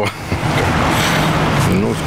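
A car driving past on the street, its tyre and engine noise swelling and fading over about a second and a half; a man's voice starts again near the end.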